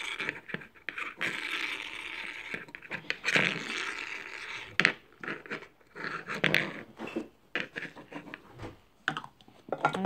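A small plastic Hello Kitty teacup toy spun by hand on its pink base, a scraping whir for the first few seconds, then scattered clicks and knocks of handling.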